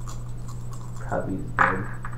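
Brief low voices at a table, one louder short sound about one and a half seconds in, with faint scratching and rubbing from hands handling things, over a steady low hum.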